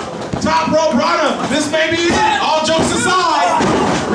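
Voices talking and shouting over a wrestling pin attempt, with thuds of bodies hitting the ring mat.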